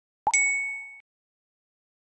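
A single ding, a chime-like transition sound effect: a sharp struck onset about a quarter second in, then a bright ringing tone that stops short just under a second later.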